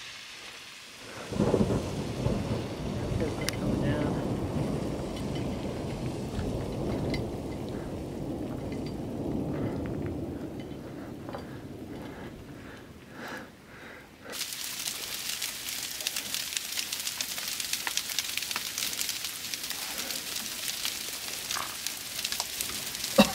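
Deep rolling thunder starts about a second in and rumbles on for some twelve seconds, slowly dying away. About two-thirds of the way through, the sound switches suddenly to heavy rain pattering close by: a dense spatter of many small hits.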